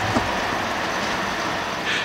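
Steady, even whooshing of electric fans running in an indoor LED grow setup, with no rhythm or change in pitch. A short laugh sounds right at the start.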